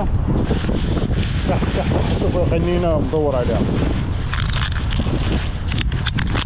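Wind buffeting the camera microphone: a steady low rumble.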